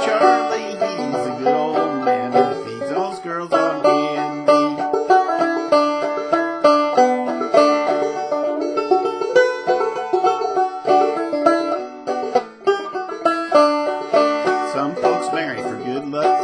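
Solo banjo playing an instrumental break between the verses of an old-time folk song: a steady, unbroken run of quick plucked notes, with a brief dip in the playing about twelve seconds in.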